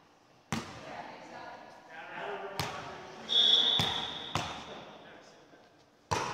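Volleyball being served and played in a gymnasium: about four sharp slaps of hands and arms on the ball, spaced a second or two apart and ringing off the hall, with players' voices between them. About three seconds in comes a loud, high, steady squeal lasting about a second, the loudest sound.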